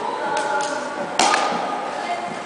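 A high-five: one sharp slap of hands meeting, a little over a second in, over the steady background noise of an indoor hall.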